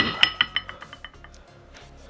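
A sharp metallic clank, ringing out in several clear tones that fade over about a second: an iron barbell weight plate knocking against metal.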